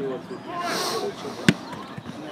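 A single sharp thud of a rugby ball bouncing on artificial turf, about one and a half seconds in, over the low chatter of players' voices.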